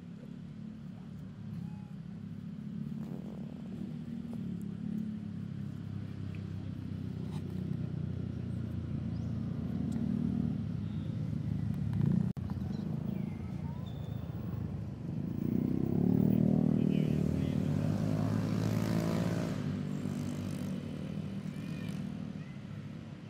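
A motor vehicle engine running nearby, growing louder and loudest about three-quarters of the way through, as it passes close by. There is a single sharp click about halfway through.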